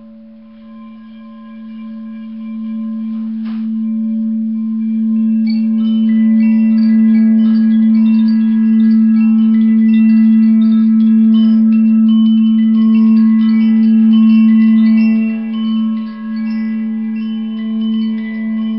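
Quartz crystal singing bowl sounding one steady, pure tone that swells over several seconds as its rim is rubbed. From about five seconds in, many short, higher ringing tones shimmer over it.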